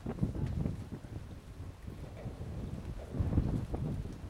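Wind buffeting the microphone: an uneven low rumble that rises and falls in gusts, strongest about three seconds in.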